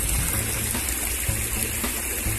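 Fountain water splashing steadily into a stone pool.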